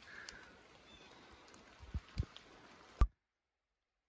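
Low handling thumps and steps on wet leaf litter over a faint steady hiss: two soft thumps near two seconds in, then a sharp click at about three seconds, after which the sound cuts off to dead silence.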